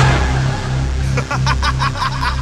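Hardcore gabber track with a pulsing distorted bass line. In the second half a quick run of short, stuttering synth stabs comes in.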